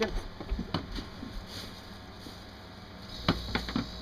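A few light clicks, then about three seconds in a refrigerator's hermetic compressor starts with a low hum. It is running as it should now that its rotted electrical connector has been replaced.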